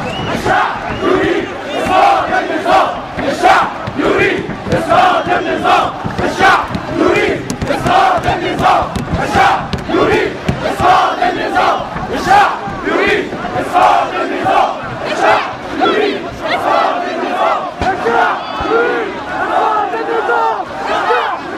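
A large crowd shouting together in many voices. The sound swells and falls in a steady beat, like a chant.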